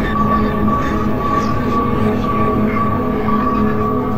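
Dark ambient electronic music: several steady drone tones held over a dense, rumbling low end.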